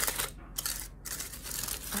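Aluminium foil wrapped around a bagel crinkling and rustling as it is handled, with a couple of short pauses.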